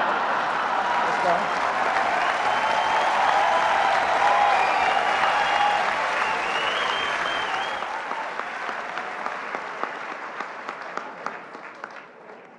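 A large banquet audience laughing and applauding, the laughter loud at first. After about eight seconds it dies down to scattered claps.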